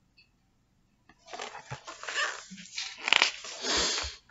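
A hardcover picture book being handled and its page turned: paper rustling in several bursts, starting about a second in, with a couple of soft thumps.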